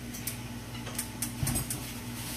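A few light, irregular clicks and a short low knock about one and a half seconds in, over a steady low hum, as a stove burner knob is turned up to medium-high heat under a pot of rice.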